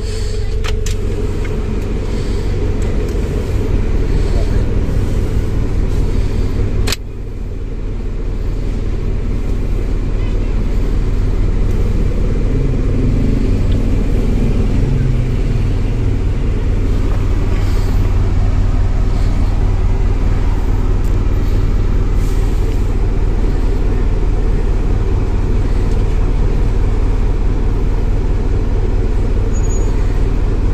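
1996 Honda Civic's engine idling steadily, heard from inside the cabin, with one sharp click about seven seconds in, after which the sound dips and then builds back up.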